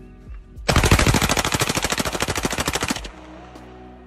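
Fully automatic gunfire: one rapid, continuous burst of about two seconds, starting just under a second in.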